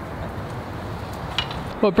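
One sharp knock of a hammer on timber about one and a half seconds in, over steady outdoor background noise; a man's voice starts right at the end.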